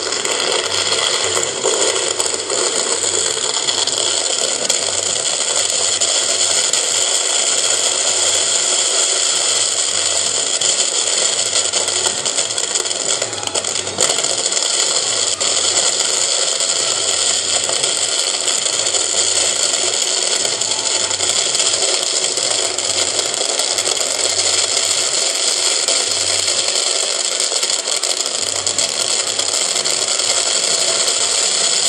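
Fireworks display heard as a loud, continuous rushing noise with no separate bangs, as from a dense barrage overloading the microphone.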